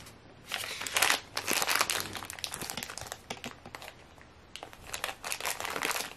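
Crinkling of a plastic blind-bag toy wrapper being handled, in several rustling bursts with a short lull about four seconds in.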